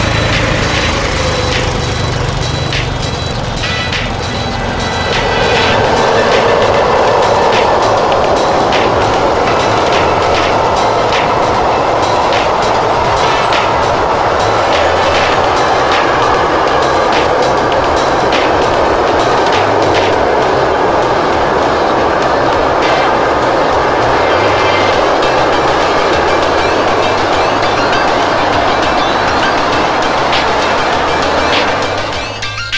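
Electric-hauled freight train of hopper and flat wagons passing, its wheels clicking over the rail joints. A steady rolling noise swells about five seconds in and holds as the wagons go by, with music laid underneath.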